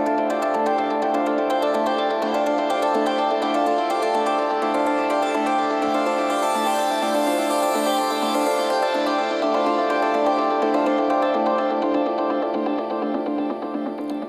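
Melodic synth loop playing back in Ableton Live as sustained keyboard chords, the notes thickened by an Ableton chord preset. This is the main melodic loop of the track. An airy swish rises over it around the middle.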